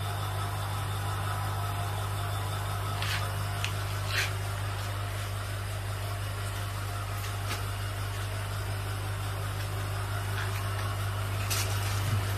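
Steady low hum of aquarium pump equipment running, with a few faint brief clicks.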